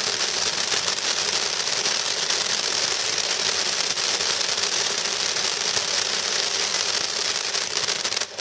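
Weco Heaven firework fountain burning: a steady, loud rushing hiss of its spark jet with fine crackling throughout.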